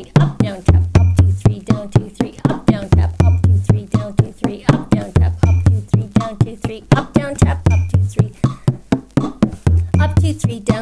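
Bodhrán played with a tipper in a 9/8 slip-jig pattern: a steady run of quick strokes, with a deep booming bass note once every bar, about every two seconds.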